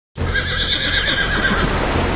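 A horse whinnying: one long, trembling call that starts suddenly and fades out about a second and a half later, over a steady low rumble.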